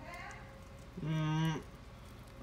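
A person's voice: one held, low, steady vocal sound lasting about half a second, starting about a second in, over a faint steady hum.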